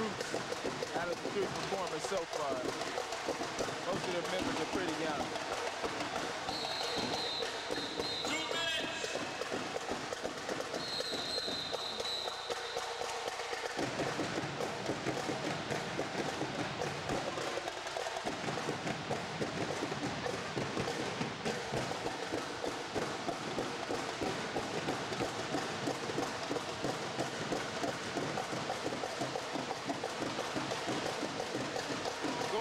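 Drill team stepping routine: rhythmic stomps on the gym floor with drums beating, over a din of crowd voices. A high steady tone sounds twice in the middle.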